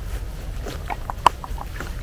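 Canada geese grazing at close range: a scatter of short clicks and snips from bills cropping grass, over a steady low rumble.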